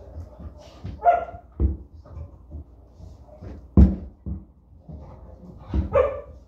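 A dog giving a few short barks, about a second in and again near the end, among knocks and clunks from a bicycle being handled; a sharp knock just before the fourth second is the loudest sound.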